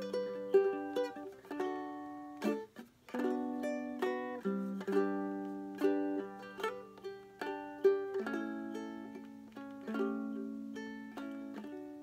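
Solo ukulele playing a picked chord accompaniment, each chord struck and left ringing as it fades.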